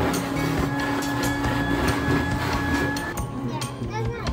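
Build-A-Bear stuffing machine blowing fill into a plush toy, a steady hum that cuts off about three seconds in, under background music with a steady beat.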